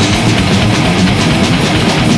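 Death metal band playing live: distorted electric guitars chugging a low riff over fast, dense drumming.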